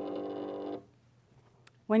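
A Silhouette digital cutter's motor runs with a steady whine, moving the pen carriage or mat as its position is adjusted, and stops suddenly less than a second in.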